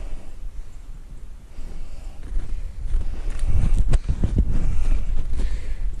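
Footsteps through deep snow with a low wind rumble on the microphone, louder in the second half, and a few sharp clicks, one strong one just before the four-second mark.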